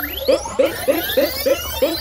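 Electronic intro jingle: synthesized tones sweeping up and down in pitch over a low drone, with a run of short blips about three a second.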